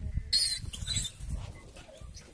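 A wild piglet giving a brief high-pitched squeal about half a second in, followed by a few faint short cries, as a leopard pulls it from its burrow. Low, uneven wind rumble on the microphone.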